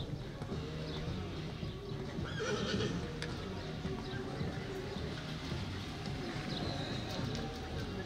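Show-jumping horse cantering on a sand arena, its hoofbeats dull and regular, with background music playing over it. A horse whinnies briefly about two and a half seconds in.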